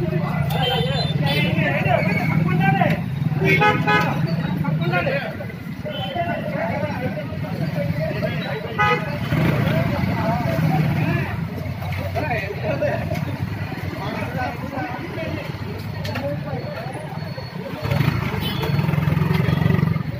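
Busy street with a crowd of people talking over one another, a steady low hum of traffic, and vehicle horns tooting a few times, near the start, in the middle and near the end.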